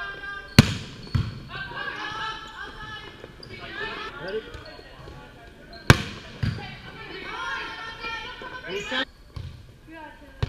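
Volleyball being struck by hands and bouncing on the court floor: a loud smack about half a second in and another about six seconds in, each followed by lighter knocks, with players' voices calling out between them.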